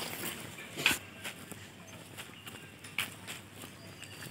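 Footsteps of a person walking on a paved lane, soft and irregular, about one step a second.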